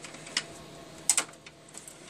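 Hands pulling cables and plastic connectors inside a steel computer tower case: a single sharp click, then two close together just after a second in, over a low background.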